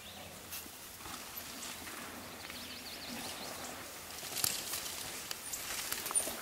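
Downhill mountain bike on a dirt trail: tyre noise over a steady outdoor hiss, with a few sharp clattering knocks that grow more frequent in the second half as the bike comes close.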